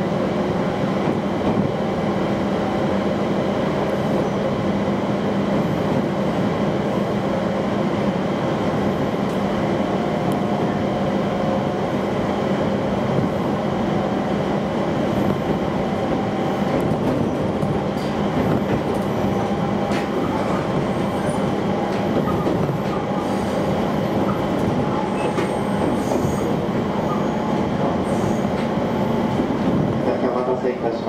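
Running noise of a JR East Joban Line train heard from inside the passenger car as it pulls out of the station and gathers speed: a steady rumble of wheels on rail with a faint hum from the running gear and a few light clicks.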